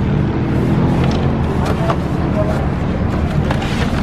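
A motor vehicle engine running as a steady low rumble, with scattered knocks and scrapes of a cardboard box being handled on a trailer.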